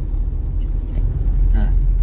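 Steady low rumble of a vehicle driving along a village road.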